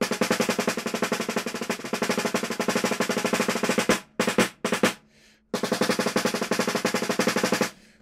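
Snare drum played with wooden sticks in a very fast run of articulated double or triple strokes. Each stroke is driven by the hand rather than bounced, so the run is not super clean. There are two short breaks a little past halfway.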